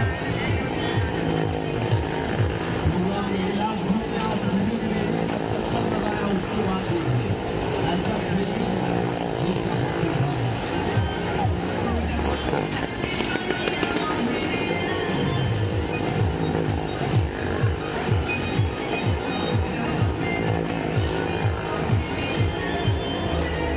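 A motorcycle engine running as it circles the vertical wall of a well-of-death drum, mixed with loud music with singing.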